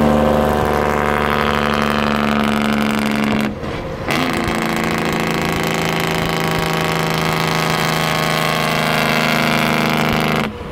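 Straight-piped 12.7 L Detroit Series 60 inline-six diesel with its Jake brake (engine compression brake) on, a loud, steady, even-pitched exhaust bark. It cuts out for about half a second about three and a half seconds in, then comes back on.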